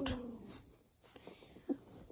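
A woman's voice trails off at the start, then faint rustling and a soft click about a second and a half in as doodle puppies shift about around a hand stroking one of them.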